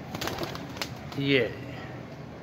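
A young Chapra pigeon's wings flapping in a quick run of claps during most of the first second as it is let go and flies up to a perch.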